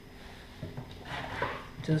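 Shuffling and rustling of a person moving round the table: clothing and footsteps, faint and uneven, with a spoken word near the end.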